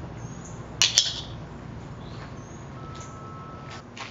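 Two sharp metallic clicks close together about a second in, from the aluminium pocket trowel's blade and handle being handled and worked. Faint high chirps and a steady low background run underneath.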